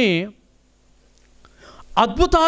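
A man's voice preaching through a microphone: a phrase ends with a falling pitch, then comes a pause of about a second before he starts speaking again near the end.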